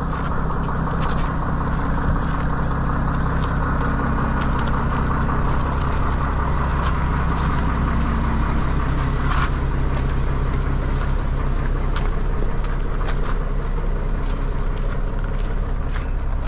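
Mack tanker truck's diesel engine running as it drives past on a wet road, with tyres hissing on the wet surface. The engine's low hum weakens after about nine seconds as the truck goes by, and the road hiss carries on.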